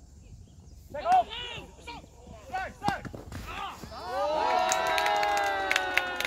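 Players on a baseball field shouting, building about four seconds in into a long, loud group yell. A few sharp claps come near the end.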